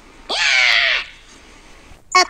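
A short, harsh scream of rage in a person's voice, rising then falling in pitch and lasting under a second.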